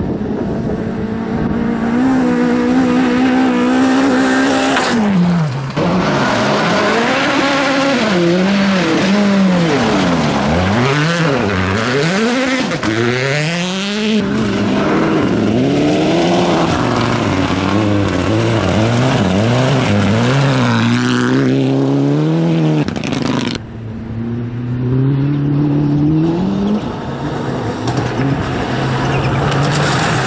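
Rally cars, Mitsubishi Lancer Evolutions among them, driven hard on a gravel stage. The engines rev high and drop over and over through gear changes and lifts. Several passes follow one another, with sudden changes between them.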